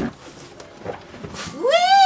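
A quiet room for about a second and a half, then a person starts a long, drawn-out vocal call that rises in pitch.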